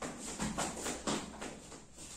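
Children's feet running on the spot on a floor, a quick string of footfalls, about three or four a second, easing off after about a second.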